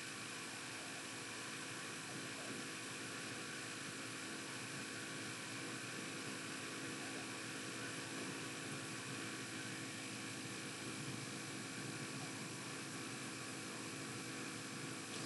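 Steady, even hiss with a faint electrical hum underneath: the recording's background noise floor.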